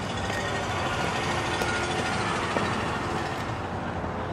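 Steady road-traffic noise: a motor vehicle running nearby, an even rumble and hiss with a faint engine hum, swelling slightly in the middle.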